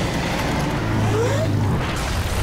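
Animated sound effects of a giant mech at work: a steady low mechanical rumble under dense rushing, crumbling noise of earth and rock breaking up, with a short rising whine a little over a second in.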